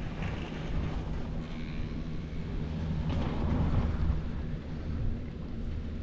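Skis sliding and carving over packed snow on a groomed run, with wind rushing over the microphone and a steady low rumble. The sliding swells a few times as the turns bite.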